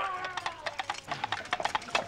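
Two coconut half-shells knocked together in a quick galloping rhythm, imitating a horse's hoofbeats.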